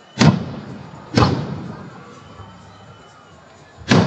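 Aerial firework shells bursting: three sharp bangs, two close together in the first second or so and a third near the end, each trailing off in an echo.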